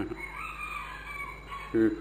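A faint, drawn-out bird call in the background, about a second and a half long, rising at first and then tailing off.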